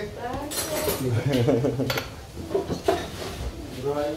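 Kitchen clatter: dishes and cutlery clinking a few times, sharp and brief, with people talking over it.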